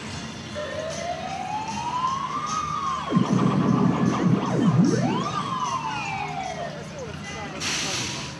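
A siren wailing, its pitch sliding slowly up and down twice, with a dense low sweeping sound in the middle and a short burst of hiss near the end.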